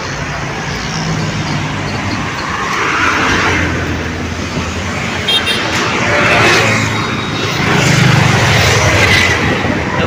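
Road traffic: vehicles passing by on a road in several slow swells of engine and tyre noise, over a steady low engine hum.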